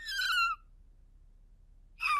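A cartoon old rabbit's voice giving out: a short, high, thin squeak that falls slightly in pitch in the first half-second, then near silence, then another brief squeak at the end. It is the sign of a lost voice, where nothing but a squeak comes out when he tries to speak.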